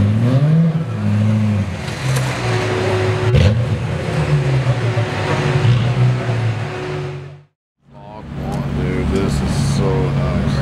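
Widebody BMW coupe's engine revving, its pitch climbing and falling several times. Then there is a short dropout, and another car's engine runs steadily at a low idle.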